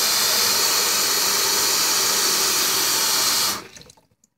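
Bathroom sink tap running steadily into the basin, shut off abruptly about three and a half seconds in.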